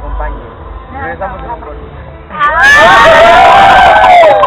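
A voice talking, then about two and a half seconds in a group of people breaks into loud cheering and shouting together.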